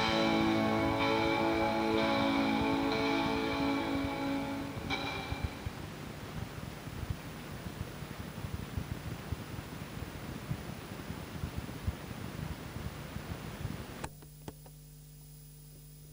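The end of a song on cassette fades out over the first five seconds, leaving tape hiss with scattered crackles. About fourteen seconds in, the hiss drops away to a quieter steady low hum.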